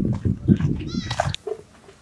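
Rough, low animal calls that break off suddenly about a second and a half in.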